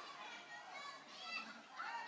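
Faint, overlapping high-pitched cries and calls from several voices, each rising and falling, growing denser near the end.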